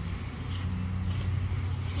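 A steady low hum in the background, without a break.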